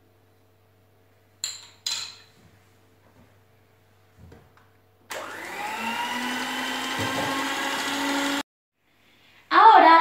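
Electric hand mixer beating cake batter: it starts about five seconds in, rises in pitch as it spins up, runs steadily for about three seconds and cuts off abruptly. Before it, two sharp clicks and a light knock.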